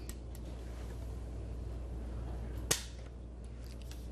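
Lock of a muzzle-loading long rifle dry-firing: a few faint clicks, then one sharp metallic snap about two and a half seconds in as the set trigger is tripped and the hammer falls on the empty gun.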